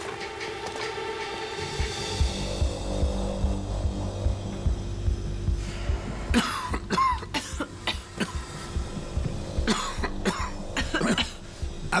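Film score of held tones over a quick low pulse. From about six seconds in, men cough several times, choking on the gas filling the cockpit.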